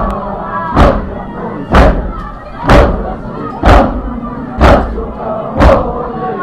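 A group of mourners beating their chests in unison in matam, a loud thump about once a second, seven in all, with a voice chanting a noha between the beats.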